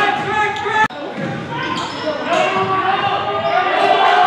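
Basketball being dribbled on a hardwood gym floor, with players' voices calling out in the echoing gym. The sound cuts off abruptly about a second in and picks up again on a new stretch of play.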